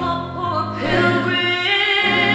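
A mixed student choir singing sustained chords, its voices recorded separately in isolation and blended into one mix. The harmony shifts about half a second in.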